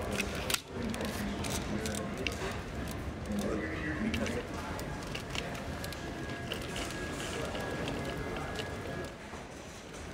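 A hard-shell roller suitcase is grabbed with a sharp clack about half a second in, then wheeled over a tiled floor with a steady rumble and rattling clicks. One of its wheels has been snapped off.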